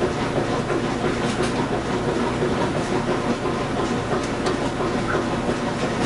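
Water running steadily from a bathroom sink tap, an even rushing noise.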